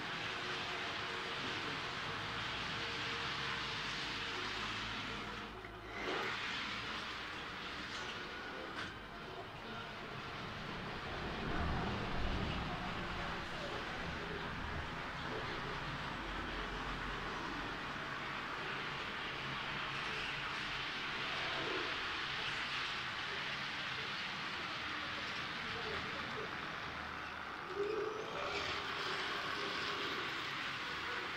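Model trains running on a model railway layout: a steady running noise from the small locomotive motors and wheels on the track, with a louder low rumble about twelve seconds in.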